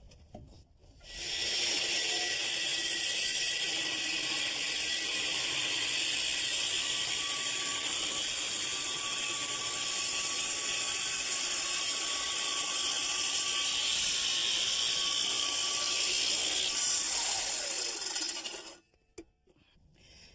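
Power saw cutting through a 2x4 along a scribed line, running steadily for about seventeen seconds; it starts about a second in and stops near the end.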